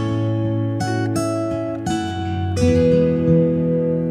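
Background music: an acoustic guitar picking single notes, then a chord about two and a half seconds in that rings on.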